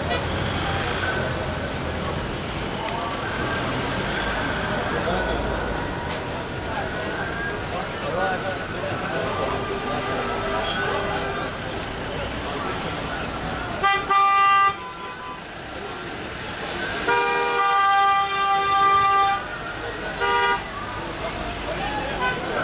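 Vehicle horns honking over steady street and traffic noise: a short blast about 14 seconds in, then a longer blast lasting about two seconds, and a brief toot near the end.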